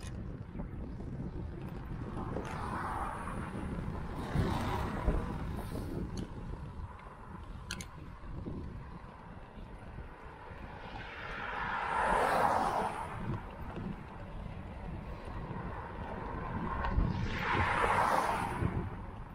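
Steady wind rumble on the microphone while riding, with motor traffic passing on the wet road: swells of tyre hiss that rise and fade over a couple of seconds, the loudest about twelve seconds in and another near the end.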